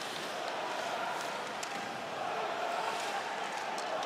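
Steady murmur of an ice hockey arena crowd during play, with a few faint sharp clicks of sticks, puck and skates on the ice.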